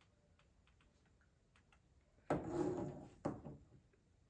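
A few faint glass clicks as whiskey is sipped from tasting glasses, then a short breathy exhale after the sip, about two and a half seconds in, and right after it a sharp knock of a glass set down on the table.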